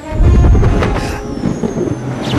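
Action-film sound effects: a loud low rushing roar, strongest in the first second and then fading, with a few sharp hits and a faint falling whine.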